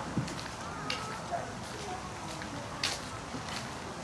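Playground ambience: distant voices calling, over a steady background hiss, with a few sharp clicks, the loudest near the end.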